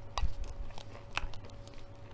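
Plastic screw cap being twisted off a bottle of drink: a few sharp clicks as the seal ring breaks, with a soft thump near the start and a louder click about a second in.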